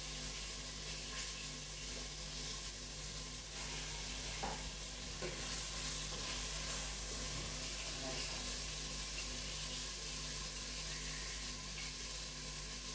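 Pieces of lamb sizzling steadily in hot oil in a stainless steel pot, searing at the start of a stew, stirred with a wooden spoon partway through.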